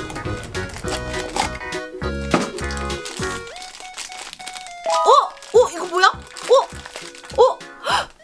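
A crinkly candy wrapper being torn and crumpled as a chocolate-toy package is opened, over background music with a beat. About five seconds in, the crackle stops and playful swooping, sliding tones take over.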